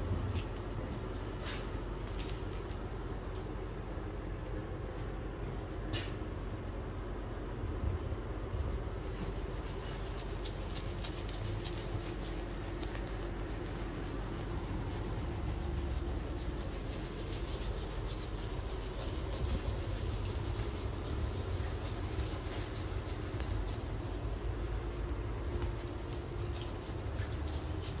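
Shaving brush working foam lather onto a stubbled chin and neck: a soft, fine, crackly scratching of bristles against skin and stubble that grows busier after the first several seconds. A steady low rumble runs underneath.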